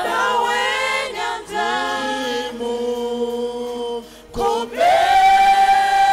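Mixed choir singing, with a male lead voice on a microphone. The voices break off briefly about four seconds in, then come back louder on a long-held note.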